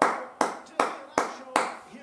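A person clapping their hands in a slow, even rhythm: five sharp claps about two and a half a second, each dying away quickly.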